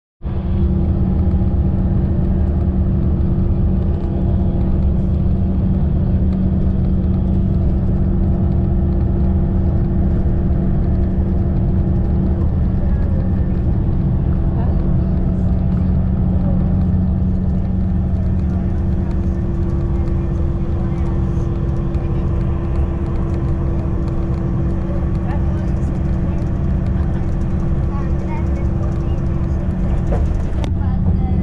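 Steady engine and road drone inside a moving bus's cabin, with a constant low hum.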